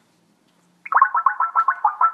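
An electronic ringing tone starts suddenly about a second in: a rapid trill of about eight pulses a second, then a held tone that begins to fade.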